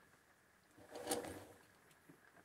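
A single short knock and rustle about a second in, as hands handle the wiring and a junction block inside an emptied overhead wooden cabinet.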